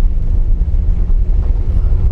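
Steady low rumble of a car's engine and tyres on a dirt road, heard from inside the cabin.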